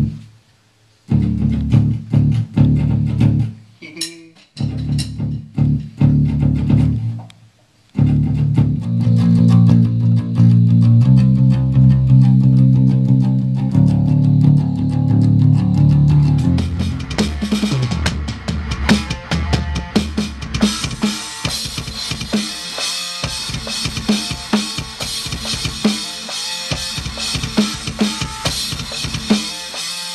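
Low amplified guitar notes and chords in the first half, broken by a few abrupt short silences. Then from about eighteen seconds a drum kit played hard, with fast kick-drum beats and cymbals.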